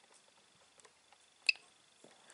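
Edecoa 1000 W pure sine wave inverter switching on: one short, sharp high beep about a second and a half in, as its status light comes on, over a faint steady high whine.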